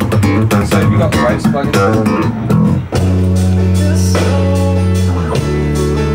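Bass guitar and guitar playing: a run of quick picked notes, then about three seconds in a long held low bass note that slides down to another sustained note.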